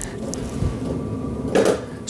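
Low, even rumbling handling noise as the metal highbanker box and camera are moved about, with a short scuff near the end.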